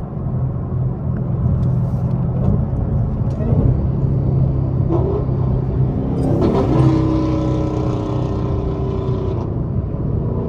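The supercharged HEMI V8 of a 900-horsepower Dodge Hellcat with a Corsa exhaust, heard from inside the cabin at highway speed: a steady low drone over road noise. A little past halfway its pitch rises as the car speeds up, then holds a higher steady note.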